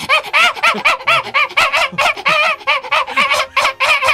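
A man's voice in a high falsetto repeating a short call about three times a second, each call rising and falling in pitch: a vocal imitation of the dog from a cat meme.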